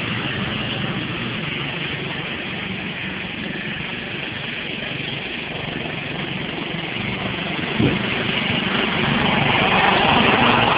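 Riding lawn tractor's small engine running steadily as it laps a dirt track, growing louder over the last couple of seconds as it comes close. A single short knock about eight seconds in.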